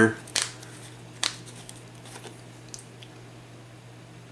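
Plastic screw cap of a Tru-Oil bottle being twisted off and handled: a couple of sharp clicks in the first second and a half, then a faint one, over a steady low hum.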